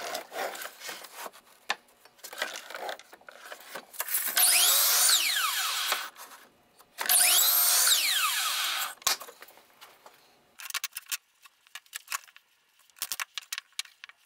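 Miter saw cutting fiberboard strips twice, each cut lasting about two seconds, with the blade's whine falling in pitch as it spins down. Light knocks and taps of the boards being handled come before and after the cuts.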